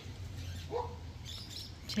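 Birds chirping briefly in the background, over a steady low hum.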